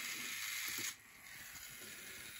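Small DC gearmotor turning a toy wheel, running with a light gear whir that drops away sharply about a second in.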